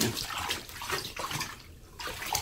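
Water splashing and sloshing in a bathtub as a husky's soaked coat is washed by hand, in a run of small irregular splashes.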